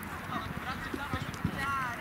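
Several footballs being tapped and kicked on grass by a group of players, an irregular patter of dull thumps, with children's voices in the background.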